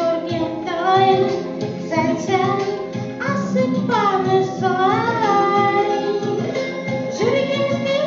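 A woman singing a slow, melodic song into a microphone over instrumental accompaniment.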